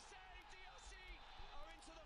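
Near silence in a break in the background music, with faint distant voices.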